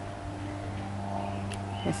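A steady low hum over a light, even background noise. A voice begins to speak near the end.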